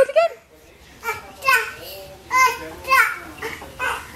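A toddler babbling: about five short, high-pitched calls with pitch sliding up and down, spaced with short pauses between.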